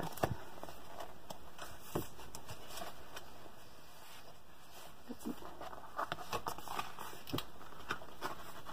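Stiff, cardboard-like pages of a large coloring book being turned and handled, giving scattered light taps and rustles.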